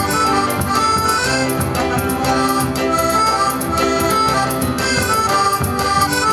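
Soprani piano accordion playing a melody of held and moving notes over a band accompaniment with a steady beat.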